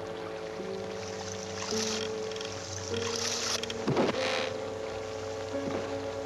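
Dramatic orchestral film score of sustained notes that shift in pitch every second or so, with bursts of rushing noise laid over it and a sharper, louder hit about four seconds in.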